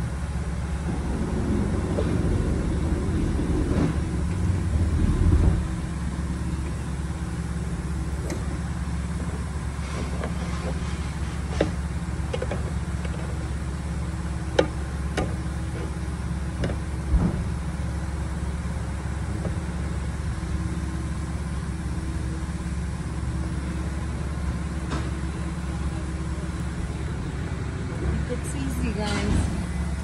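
A vehicle engine idling steadily with a low hum. Over it come a few sharp, separate clicks and taps as a long-reach lockout tool works inside a truck door that is wedged open with an air bag, with louder handling rustle in the first few seconds.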